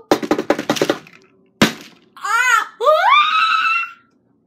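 A quick patter of taps for about a second, as of running feet, then a single sharp thump, like a jump landing on a vault. After it comes a girl's wavering vocal cry and then a rising, held "aah".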